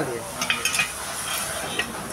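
Light metallic clicks and scrapes of cut pieces of square steel tube being handled and set down on a concrete floor, with a quick cluster of clicks about half a second in.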